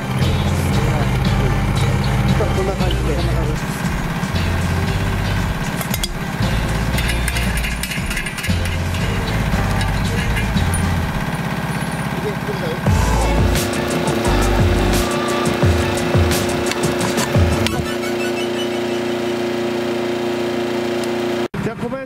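Yanmar SV05 mini excavator running as it works, mixed with background music.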